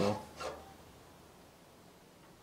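The end of a spoken word, a short voiced sound about half a second in, then faint, steady background noise with no distinct event.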